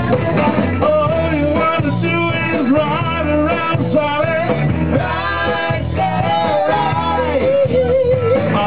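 A live rock band playing: electric guitar, bass and drum kit with a male singer at the microphone.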